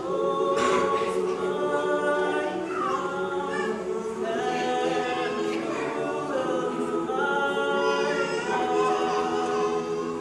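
Large mixed high school choir singing a cappella, holding sustained chords; the singing gets louder right at the start.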